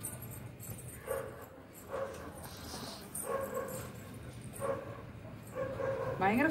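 An animal calling in short pitched bursts, five in all, about a second apart, over a low steady hum.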